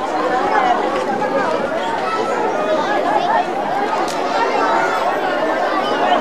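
A crowd of spectators chattering, with many voices talking over one another steadily.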